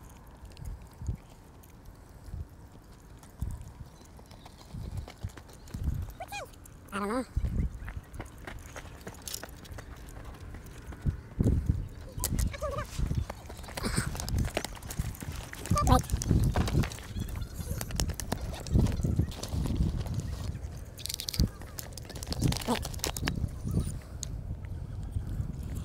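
Irregular knocks, bumps and rustles of hands and gear handling close to a body-worn camera's microphone, with a few brief vocal sounds. A low rumble fills in under them in the second half.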